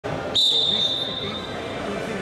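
Wrestling referee's whistle blown once, a single steady high note starting about a third of a second in and dying away over about a second, signalling the start of the bout. Chatter echoes in the sports hall behind it.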